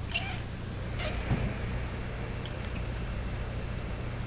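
A pet's brief, faint whine about a second in, over a steady low hum.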